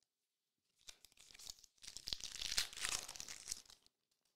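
A sealed trading-card pack's wrapper being torn open by hand: a short rip about a second in, then, after a brief break, a longer and louder tearing and crinkling of the wrapper lasting about two seconds.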